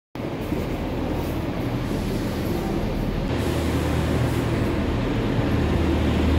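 Class 144 Pacer diesel railbus standing at the platform with its engine idling, a steady low hum.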